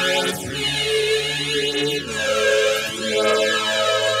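Church choir singing slow, held chords that change about halfway through, with a hollow swirling sound sweeping up and down over them about every two seconds.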